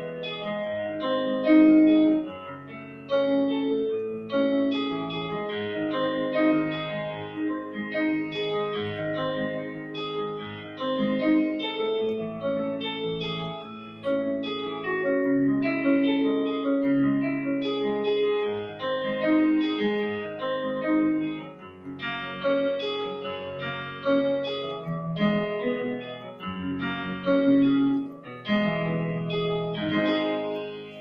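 Yamaha digital keyboard played with a piano sound through a small stage amplifier: a continuous piece of pitched notes and chords, with notes changing about once or twice a second.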